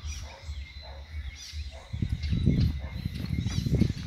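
Birds chirping in short repeated calls, with a low rumbling noise coming in about halfway through.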